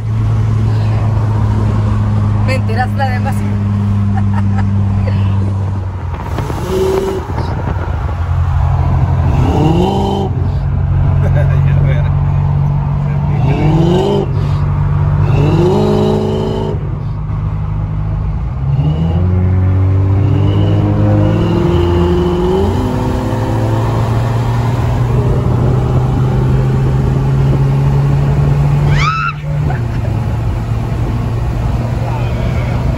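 Car engine heard from inside the cabin of a Volkswagen Golf GTI during a drag race. It idles steadily at first, then accelerates hard, its pitch climbing and dropping again at several quick gear changes, then settles into a steady drone at speed.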